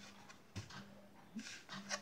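Faint handling of playing cards: a few soft slides and light taps as two cards are turned over and spread on a cloth mat.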